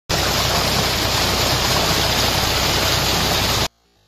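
Water gushing from a new tubewell's discharge pipe into a concrete tank, a loud steady rush with a low steady hum beneath it. It cuts off abruptly near the end.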